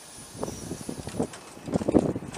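Outdoor airfield ambience: a steady haze of wind on the microphone, with faint, indistinct voices a few times.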